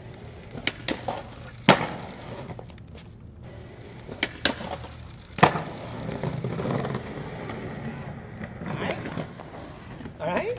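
Skateboard on concrete: several sharp wooden clacks of the board hitting the ground, the loudest about two seconds in and another about five and a half seconds in, then the wheels rolling steadily over the paving.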